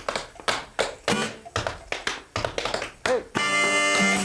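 Tap shoes dancing on a portable wooden board: a quick rhythmic run of taps over acoustic guitar accompaniment. Near the end a harmonica comes in with a held chord.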